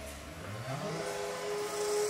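A low tone slides up in pitch during the first second, then holds steady while a hiss swells above it: a rising electronic swell of the kind used as an edited intro effect.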